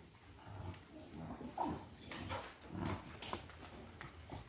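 Two puppies play-fighting on dirt, making short, irregular vocal noises, with scuffling in between.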